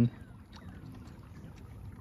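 Faint water sounds around a kayak on a river, with a few small ticks and clicks.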